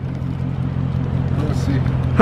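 A Dodge Charger Scat Pack's 392 HEMI V8 idling steadily, a constant low hum with no revving.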